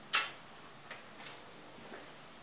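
A blown kiss: one short lip smack just after the start, then quiet room tone with a couple of faint ticks about a second in.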